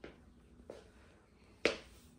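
Footsteps of sock-like slip-on shoes on a laminate plank floor: a few sharp taps, the loudest near the end.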